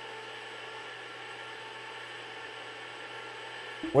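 Steady electrical hum and hiss of room tone, with several faint steady tones and no change in level.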